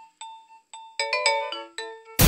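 Mobile phone ringtone: a melody of short bell-like notes, spaced out at first, then quicker and lower in pitch in the second half.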